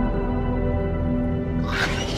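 Tense background score of sustained held tones, with a rushing noise swelling in near the end.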